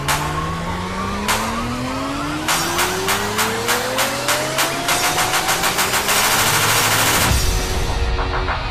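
Frenchcore electronic music build-up: a synth tone rises steadily in pitch over a drum roll that speeds up into a rapid continuous roll, then a heavy bass kick drops in about seven seconds in.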